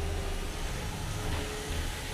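Steady whir of small combat robots' drive and weapon motors in the arena, with a faint held hum and no distinct impacts.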